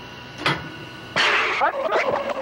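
A single click from a reel-to-reel tape deck's controls, then just past the middle a dense burst of electronically processed sound with rising sweeps starts abruptly: the tape playing back the station ID's special-effects mix.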